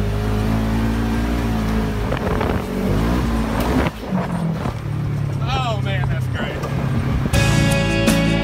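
Polaris RZR XP 1000 side-by-side's twin-cylinder engine running under way on a dirt trail, heard from the cab, its pitch rising around two to three seconds in. A short voice comes in near the middle, and music starts about a second before the end.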